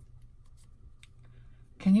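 Faint light taps and soft rustling of a stiff, layered cardstock greeting card being handled and set flat on a cutting mat; a woman starts speaking near the end.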